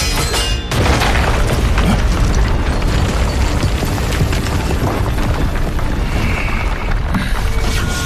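Cinematic battle sound effects: quick metallic clinks of blades striking rock, then a sudden deep boom under a second in as the rock breaks apart, running on as a heavy low rumble over music.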